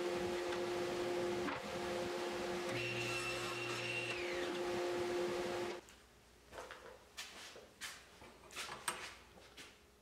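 Steady hum and hiss of workshop machinery around a table saw, which stops abruptly about six seconds in. Then come a few light clicks and taps as a steel rule and a pencil are set against the wood.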